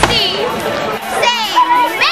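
Several children's voices close by, talking and calling out excitedly over one another, with high rising and falling pitch.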